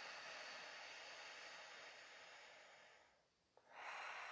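Slow, soft breathing close to the microphone: one long breath that fades out over about three seconds, a short pause, then the next breath starting near the end.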